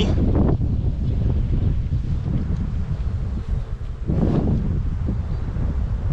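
Wind buffeting the microphone outdoors: a continuous low rumble, with a brief louder rush about four seconds in.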